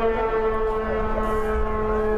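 A vehicle horn held in one long, steady, unwavering blast over a low rumble.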